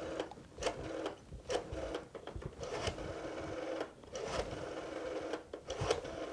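Rotary telephone dial being turned and spinning back, several digits in a row, each return a run of mechanical clicks.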